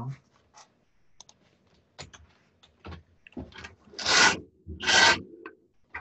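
Two short rubbing or scraping sounds about a second apart, preceded by faint scattered clicks and taps.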